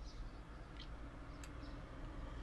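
Low steady room hum with a few faint clicks of a computer mouse.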